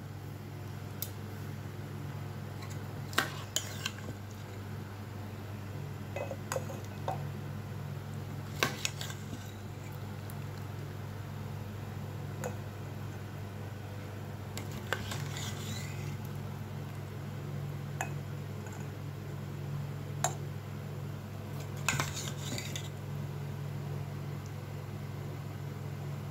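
A metal spoon scooping mango pickle from a steel pot and tapping against the pot and a ceramic pickle jar, making scattered clinks and scrapes a few seconds apart over a steady low hum.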